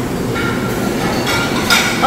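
Busy buffet dining hall ambience: a steady hubbub of diners with clinks of dishes and serving utensils, one sharper clink near the end.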